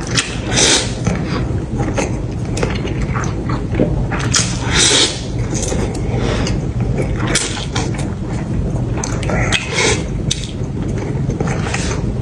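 A man slurping and chewing a mouthful of mixed noodles eaten with chopsticks. There are three longer slurps a few seconds apart, with shorter sucking and chewing sounds between them.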